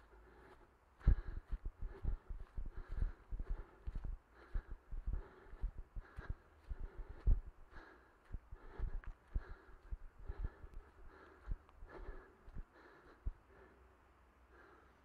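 Running footfalls on grass: thuds about three times a second, starting about a second in.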